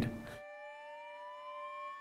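A police siren winding up faintly, one tone slowly rising in pitch, over a steady held tone.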